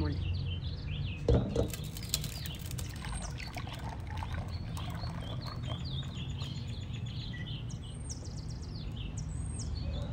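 Small birds chirping repeatedly over a steady low background hum, with two knocks about a second and a half in as the glass bowl of batter is lifted from the wooden table.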